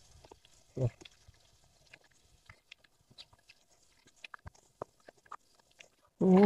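Mostly quiet, with one short, low vocal sound about a second in and faint scattered clicks and ticks, most of them between about four and five seconds in.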